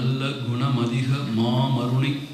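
A man chanting a Tamil devotional verse in a low voice on long held notes, with a short break about halfway.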